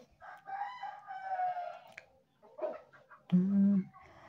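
A rooster crowing once in the background, a long call that drops in pitch as it ends.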